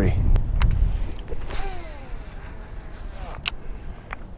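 Baitcasting reel being cranked to retrieve a heavy two-ounce lure, with a few sharp clicks from the reel and rod handling. Wind rumbles on the microphone for about the first second, then dies down.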